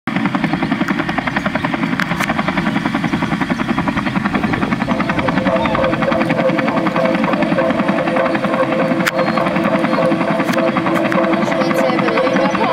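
Helicopter rotor chopping in a fast, steady pulse, with sustained musical tones coming in about five seconds in.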